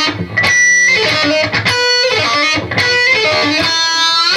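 Electric guitar played alone: a lead phrase of single picked notes with hammer-ons, several notes left ringing. Near the end, one note is bent upward in pitch.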